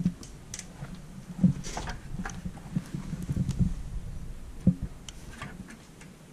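A metal spirit level being handled against a wall: a few light knocks, the loudest about a second and a half in and another near the end, with short scraping sounds, over low rumbling handling noise from the hand-held camera.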